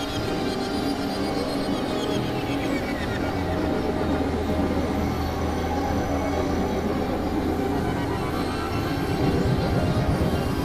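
Experimental electronic music: dense, layered synthesizer drones and noisy textures, held steady. A low hum comes in about four seconds in.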